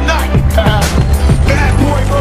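Instrumental stretch of a hip-hop beat with a heavy, steady bass and regular drum hits, with no rapping.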